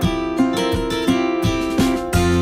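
Background music: an acoustic guitar strummed in a steady rhythm, about three strokes a second.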